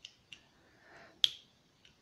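Small plastic Lego pieces of a trash can clicking against each other as they are handled: one sharp click a little over a second in, with a few faint ticks around it.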